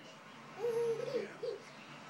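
A toddler's voice making a held, steady 'ooh'-like sound about half a second in, then a short rising one and a brief third one.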